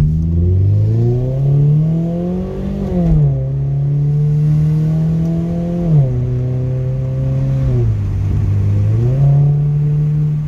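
Car engine and exhaust heard from inside the cabin under moderate acceleration. The revs climb for about three seconds, then drop at an upshift and hold steady. The pitch steps down twice more and rises again near the end.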